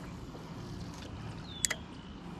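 Faint steady outdoor background noise on the water, with two quick sharp clicks near the end from a baitcasting reel being handled.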